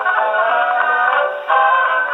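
A 1920s dance orchestra playing a fox trot from a vertical-cut Pathé 78 record on a Pathé VII acoustic phonograph. The sound is thin and boxy, with no deep bass and no high treble.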